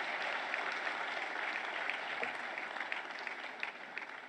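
Audience applauding, a steady patter of many hands clapping that slowly dies down toward the end.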